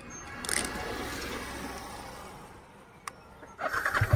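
A swell of rushing noise rises and fades, then a sharp click about three seconds in. In the last moment the Yamaha R15 V3's single-cylinder engine starts up into a low pulsing rumble.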